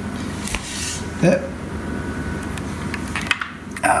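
A magnetic nori clip is handled and set against the aquarium glass, making a few light clicks and taps. A short voice sound comes just after a second in, and a steady background noise runs underneath.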